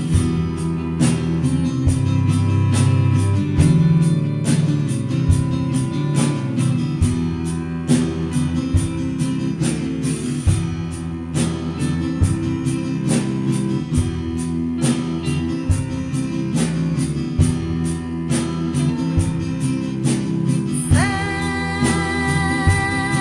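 A small band playing live: a steady drum beat with kick drum, strummed acoustic guitar, electric guitar and bowed cello. About a second before the end, a woman starts singing.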